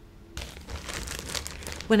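Plastic zip-top bag being pulled open, its thin plastic crinkling, starting about a third of a second in.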